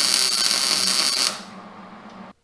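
Wire-feed (MIG) welder arc crackling steadily as a short tack weld is laid on a steel axle bracket, cutting off suddenly about a second and a half in.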